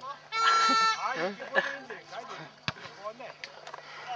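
Men's voices at the edge of a football pitch: a loud, drawn-out shout about half a second in, then scattered talk. There is one sharp knock just past the middle.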